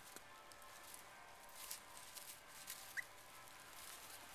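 Faint scuffling and rustling of two small dogs play-wrestling in dry leaves, with a few soft scuffs in the middle and a single short high squeak about three seconds in.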